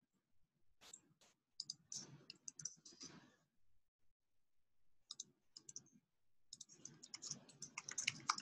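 Faint keystrokes on a computer keyboard, typed in three quick bursts with short pauses between them.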